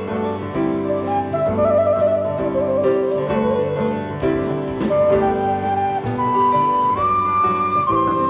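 Instrumental break in a ballad: a small wooden end-blown flute plays the melody in held notes, climbing higher near the end, over band accompaniment of sustained chords.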